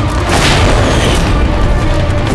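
Dramatic TV-serial background score with a heavy low drone, punctuated about half a second in by a swelling whoosh-and-boom sound-effect hit that fades within a second.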